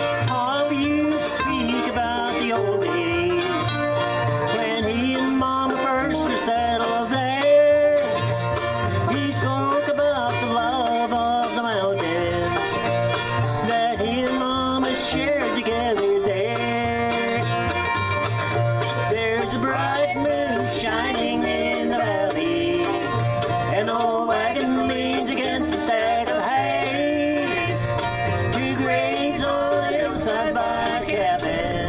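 Bluegrass band playing live on fiddle, banjo, mandolin, acoustic guitar and upright bass.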